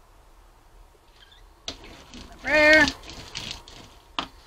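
A single short pitched vocal sound, about half a second long with a wavering pitch, about two and a half seconds in, preceded by a sharp click.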